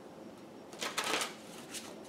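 Deck of cards being shuffled by hand: a papery burst of shuffling about a second in, followed by a shorter flick near the end.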